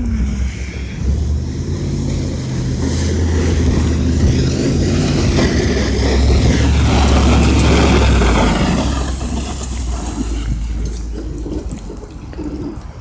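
Snowplow pickup truck driving past while plowing snow, its engine getting louder as it approaches to a peak about seven to eight seconds in, then fading as it moves away.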